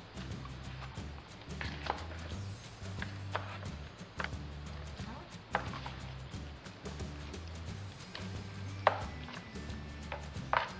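Wooden spoon and fork knocking against a plastic bowl and the potatoes and chicken in it as they are mixed: a handful of scattered short knocks, the loudest near the end. Background music with a steady repeating bass plays throughout.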